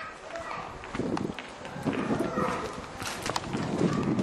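Indistinct voices talking, with a few sharp clicks about three seconds in.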